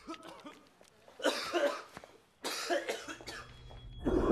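A man coughing: a few small coughs at the start, then two harsh, heavy coughing fits about one and two and a half seconds in.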